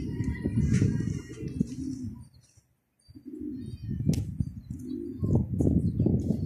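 Domestic pigeons cooing over a rough low rumble of noise on the phone's microphone. The sound cuts out for about a second near the middle.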